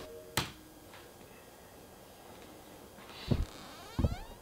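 Handling noise as headphones are put on: a sharp click about half a second in and a short thump near the end, with quiet room tone in between.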